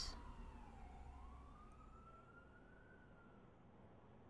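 Faint distant siren wailing, its pitch falling for about a second, then rising slowly and fading out near the end, over low room hum.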